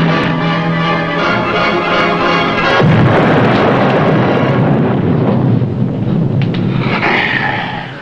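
Music, then about three seconds in a depth charge explosion: a sudden loud blast that rumbles on and dies away over about four seconds.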